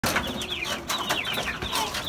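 Caged chickens calling: many quick, high, falling peeps overlapping several times a second, with a few sharp clicks among them.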